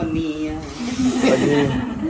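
Several people talking, their voices overlapping about halfway through.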